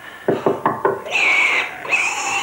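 Four quick knocks, like a knock on a wooden door, followed by a brief high-pitched sound.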